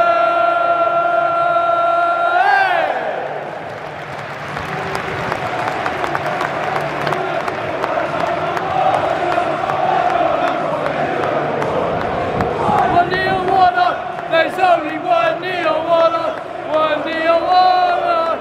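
Football crowd chanting: a long held note that rises at its end, then crowd noise, with a rhythmic chant starting up again about two-thirds of the way in.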